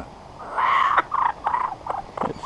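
Young laughing kookaburra calling: one longer note followed by three short ones.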